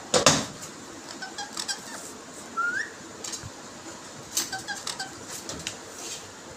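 Indian ringneck parrot moving in its wire cage: a sudden loud rustle just after the start, then scattered small clicks and faint short squeaks, with one short rising squeak a little before the middle.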